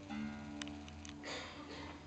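Acoustic guitar played flat in the lap style, a quiet note plucked just after the start and left ringing with its overtones, with a small click about half a second in.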